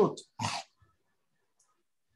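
A man's voice ends a sentence with one word and a short vocal sound. Then there is dead silence for over a second, as if a noise gate has cut in.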